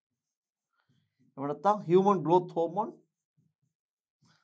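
A man speaking Sinhala briefly, starting about a second in and lasting about a second and a half.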